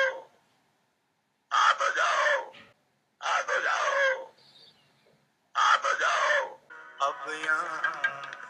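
A man's voice calling out loudly "Aa tu jao" ("come on over") three times, each call about a second long with silence between. Near the end a song with music begins.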